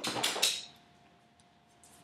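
A short burst of rustling and tapping, about half a second long, as hands move while signing, then only a faint steady hum.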